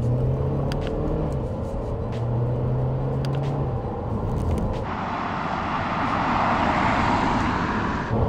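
Audi Q2's 1.5 TFSI four-cylinder petrol engine humming steadily with road rumble, heard inside the cabin while cruising. About five seconds in, the sound cuts abruptly to a louder rushing noise of the car on the road, heard from outside.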